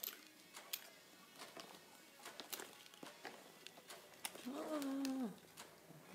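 Small scattered clicks and light rustling of jewelry and its packaging being handled and sorted through, then a woman's drawn-out 'oh' near the end.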